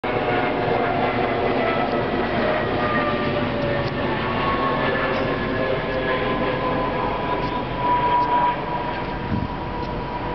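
A train running nearby: a steady rumble under several whining tones that slowly fall in pitch, with a few faint clicks and a brief louder swell just after eight seconds.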